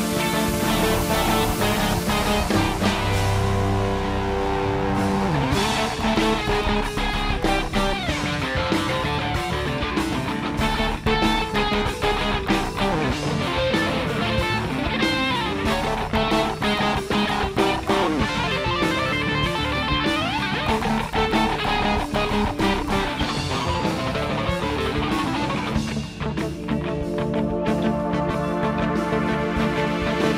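Live rock band playing an instrumental passage, electric guitar to the fore over bass and drums, with notes sliding up and down in pitch.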